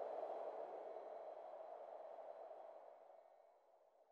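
Faint, low rushing underwater-ambience sound effect with no distinct tones, fading away over the second half.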